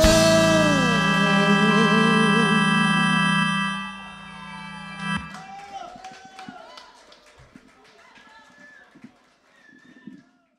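A rock band's final chord, electric guitar and organ-like tones held steady, with the singer's last note sliding down and ending about a second in. The chord fades and cuts off around five seconds in, then faint voices trail away.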